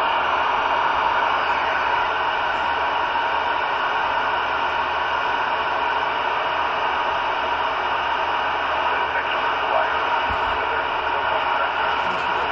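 CB radio receiver tuned to 27.185 MHz (channel 19), squelch open, putting out steady static hiss with no one transmitting.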